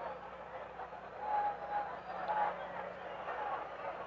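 Faint, steady racetrack background ambience while the horses stand in the starting gate, with a faint brief tone a little over a second in.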